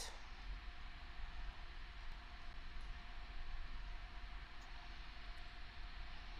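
Steady background hiss with a faint low hum and no distinct sounds: the recording's room and microphone noise.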